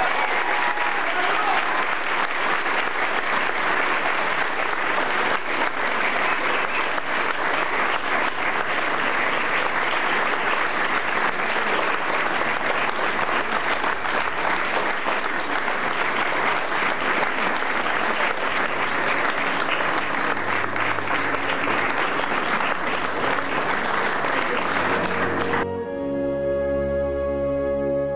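A hall full of people applauding: steady, sustained clapping that cuts off abruptly near the end.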